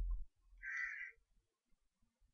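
A single harsh caw, like a crow's, lasting about half a second and starting about half a second in, one of a series of calls repeating every second or two. A low rumble dies away at the very start.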